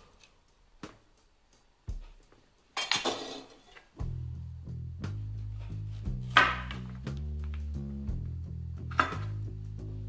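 A vegetable peeler scraping down a carrot on a wooden cutting board, with a few light knocks. About four seconds in, background music with a steady bass line comes in, and over it a kitchen knife cuts through the carrot onto the board twice.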